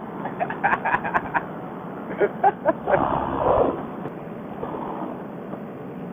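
Men laughing in short bursts over a helmet Bluetooth intercom, thin and telephone-like, with a steady background hiss throughout.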